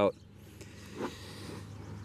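A word of speech ends at the start, then faint, steady outdoor background noise, with one short soft sound about a second in.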